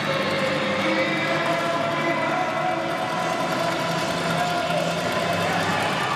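Steady din of crowd chatter mixed with background music in a large mall atrium around an ice rink, with no single sound standing out.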